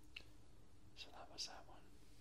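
A faint mouth click, then about a second in a brief soft whisper of a syllable or two, with hissy consonants, against near silence.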